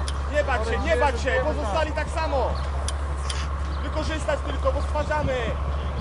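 Voices calling and shouting across an outdoor football pitch, a run of short calls in the first two and a half seconds and more about four to five seconds in, many of them high-pitched like children's voices, over a steady low rumble.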